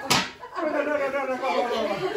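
One sharp smack right at the start as a kneeling man bows his head to the floor in a kowtow, followed by several people talking over each other.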